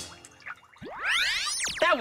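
A cartoon scene-transition sound effect: a cluster of whistling tones that sweep up together and then fall back down, lasting about a second.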